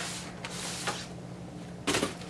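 A cardboard wig box being handled and turned in the hands: a rustling scrape at the start, a light tap in the middle, and a sharper knock or scrape of cardboard near the end.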